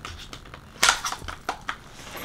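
Clear plastic wrapping crinkling and rustling as it is handled: a few short crinkles, the loudest just under a second in.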